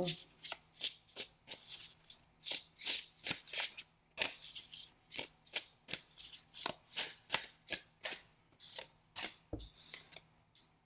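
A deck of oracle cards being shuffled by hand, the cards slipping from hand to hand in repeated swishes at about two to three a second. A soft thump just before the end as the deck is set down on the table.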